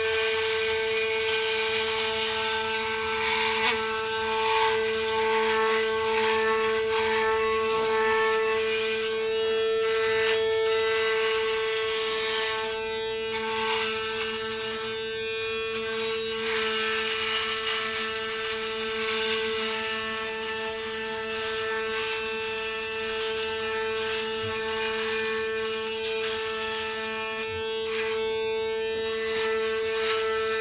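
Braun Series 5 5018s electric foil shaver running with a steady motor hum, its head cutting stubble on the neck and jaw, with a rasping that rises and falls as it is moved across the skin.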